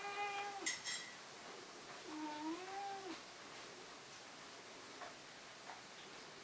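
A cat meowing twice: a short meow ending just after the start and a longer one about two seconds in that dips and then rises in pitch. Two faint sharp clicks come about a second in.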